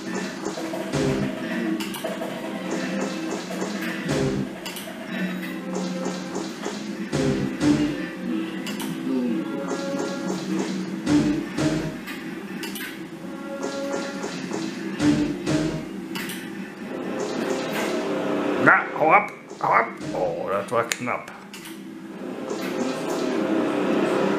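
Merkur slot machine playing its looping game music, with short clinking and pinging sound effects as the reels spin and stop while the cashpot counts up.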